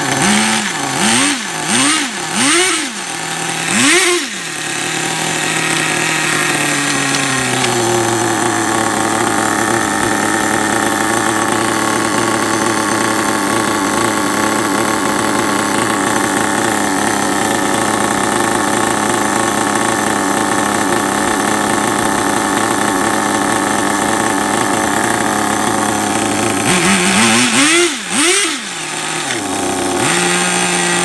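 Nitro RC car's small two-stroke glow engine running on the bench. It is blipped up and down four times in the first few seconds, settles into a steady idle, and is revved twice more near the end. It runs well but is set rich, freshly cleaned out after being gummed up and seized.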